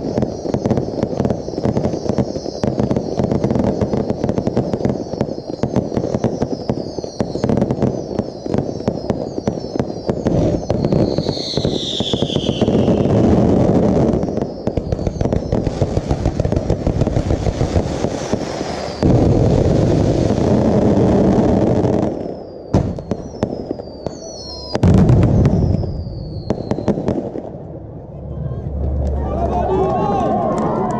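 Finale of a fireworks display: a dense barrage of rapid shell bursts and crackling reports, with falling whistles from whistling shells. One last heavy burst comes near the end, and then the barrage thins out.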